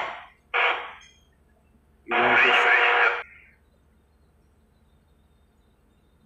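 A single electronic buzzer tone about two seconds in, lasting about a second and starting and stopping abruptly, louder than the talk around it.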